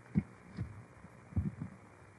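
A few soft, muffled low thumps at irregular intervals: one just after the start and a pair about a second and a half in, over faint room hiss.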